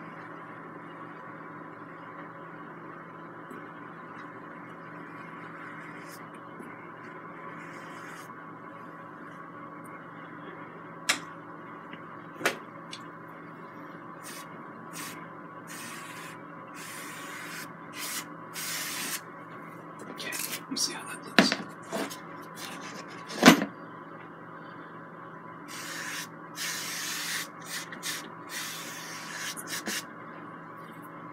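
A steady room hum. From about halfway, a wide flat paintbrush scrubs oil paint onto canvas in short, irregular hissing strokes, with a few sharp knocks, the loudest near the end.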